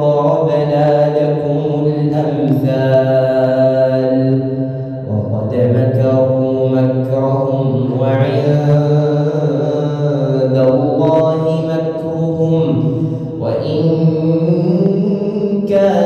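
Imam reciting the Quran in a single male voice, chanting long, drawn-out melodic phrases with held notes. A new phrase begins about five seconds in and again near the end.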